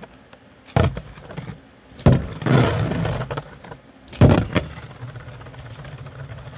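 Hand-spun Beyblade top knocking and clattering against a plastic stadium three times, then spinning with a steady low whir on the stadium floor for the last part.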